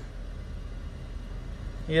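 Steady low rumble inside a car's cabin, with no music playing yet. A man's voice starts right at the end.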